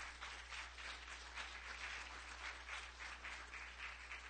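Audience applauding: many hands clapping at once, over a steady low hum.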